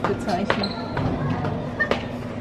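Feet landing hard on the floor from jumps, a few sharp thuds spread over two seconds, the jumping meant to register on a seismograph.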